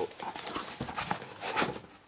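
Cardboard shipping box and its packing being handled as a boxed DVD set is pulled out: irregular light knocks, scrapes and rustling.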